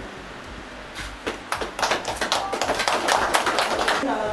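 A small group of people applauding. The clapping starts about a second in and grows quickly into dense, quick claps.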